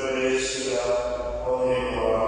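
Slow liturgical chant sung during Mass, in held notes that step to a new pitch every half second or so.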